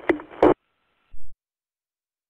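The end of a two-way radio transmission relayed over a GMRS repeater link: a brief burst of noise cuts off abruptly about half a second in as the station unkeys, and a short low thump follows about a second in.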